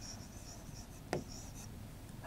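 Faint marker strokes squeaking and scratching on a writing board as a word is written, with a light click about a second in.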